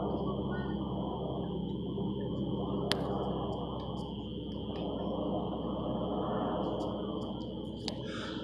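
Steady low drone of a C-130's turboprop engines passing overhead, under a continuous high, even insect trill. A single sharp click about three seconds in.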